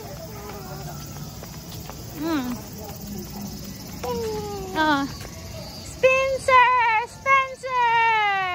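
A small child's high voice calling out in short, sing-song vocalisations that slide in pitch, louder near the end with a quick run of calls and a long falling one.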